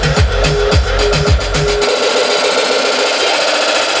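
Electronic dance music from a DJ set on turntables and mixer: a kick drum at about two beats a second under a held tone, then about two seconds in the kick and bass cut out, leaving a hissing noise wash.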